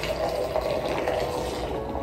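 Hot chai poured in a steady stream from one glass measuring jug into another, the liquid splashing and filling the lower jug without a break. The tea is being aerated.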